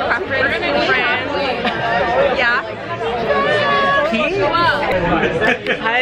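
Several voices talking and chattering over one another in a crowded room.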